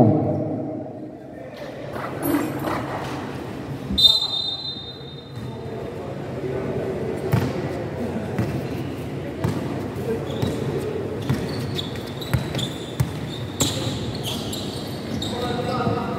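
Basketball game sounds in an echoing covered court: the ball bouncing on the concrete floor, with shoe squeaks and players and spectators talking in the background. A short high whistle sounds about four seconds in.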